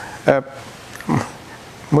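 A man's voice during a pause in his talk: a short syllable, then about a second in a brief vocal sound that falls steeply in pitch, like a hesitation, and his next word beginning near the end.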